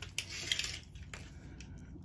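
Rustling and light crinkling of the plastic film over a diamond painting canvas as hands and a measuring tape move across it, with a few soft clicks. It is loudest in the first second, then softer.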